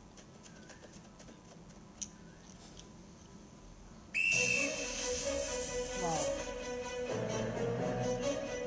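A short, sharp whistle blast from a sports whistle about four seconds in, then film background music with a long held note.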